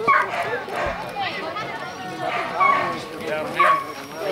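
A small dog yipping in short, high barks, about three times, over people talking.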